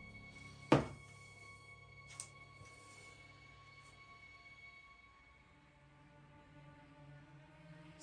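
A single hard thunk about three-quarters of a second in, then a lighter click, from plastic paint cups being handled on the work table. Faint steady background music plays underneath.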